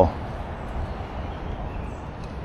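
Steady low background noise with no distinct event, after the end of a spoken word at the very start.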